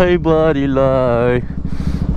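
Mostly a voice, drawing out one long syllable, then a short breathy hiss near the end. A motorcycle engine runs steadily underneath.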